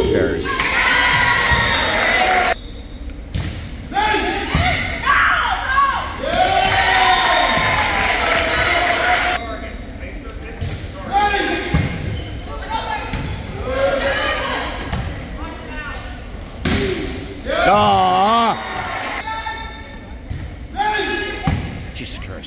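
Indoor volleyball rally in a gymnasium: the ball is struck and bounces on the wooden court, amid near-constant shouts and calls from players and spectators, echoing in the large hall. A long wavering cry rises above the rest about eighteen seconds in.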